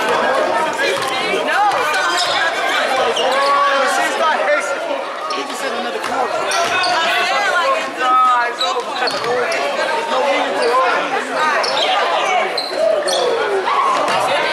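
Spectators talking and calling out over one another in a gym, with a basketball bouncing on the hardwood floor.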